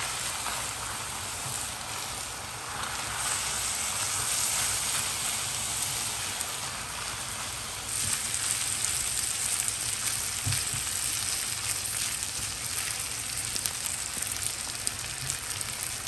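Beef slices, rice and corn sizzling in a hot iron skillet while a silicone spatula tosses and mixes them, with light scraping ticks from the strokes. The sizzle turns louder and brighter about halfway through.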